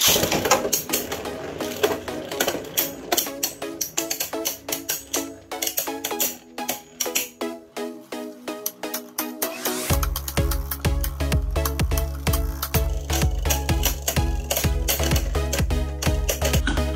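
Background music, joined by a heavy bass beat about ten seconds in, over the clicking and clatter of Beyblade Burst spinning tops launched by ripcord at the start and clashing in a clear plastic stadium.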